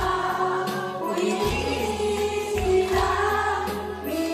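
Karaoke singing: a woman sings into a microphone over a music backing track, with several other voices singing along.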